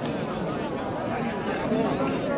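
Crowd chatter: many voices talking at once in a dense, steady babble with no single speaker standing out.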